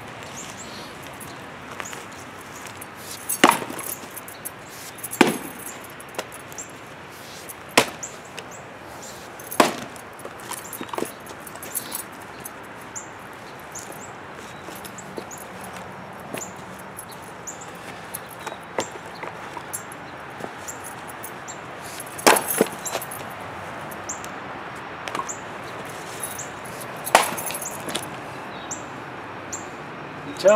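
Heavy fireman's axe chopping into and splitting hardwood firewood rounds: about six sharp, loud chops, four of them spread over the first ten seconds and two more later, with lighter knocks of wood between.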